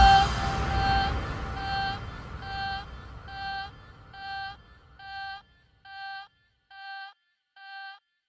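Ending of an electronic dance track: a final hit at the start whose low rumble dies away over about five seconds, under a single synth note that repeats a little more than once a second and fades steadily.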